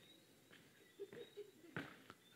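Near silence in a pause of speech, with a few faint, brief sounds in the second half.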